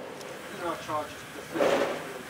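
Indistinct men's voices talking, with a brief, louder burst of noise about one and a half seconds in.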